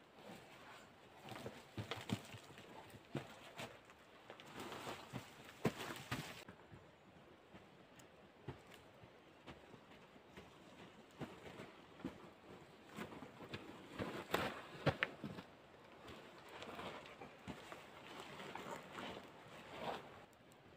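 Footsteps on the forest floor with irregular knocks and rustles of dry logs being lifted, dragged and set down.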